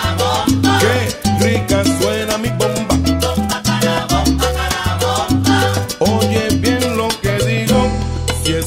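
Salsa music, a stretch without vocals: a bass line in short repeating notes under steady percussion and pitched instruments.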